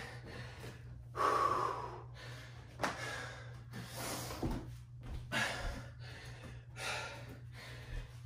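A man breathing hard after an intense bout of mountain climbers, with a string of deep, audible breaths in and out, one every second or so.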